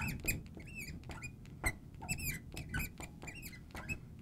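Felt-tip marker squeaking on a glass lightboard as an equation is written: a quick run of short, high squeaks that bend in pitch, one with each pen stroke, mixed with light ticks as the tip touches down.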